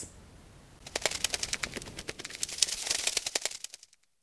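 Irregular crackling: a dense run of sharp ticks and crackles that starts about a second in and fades out just before the end.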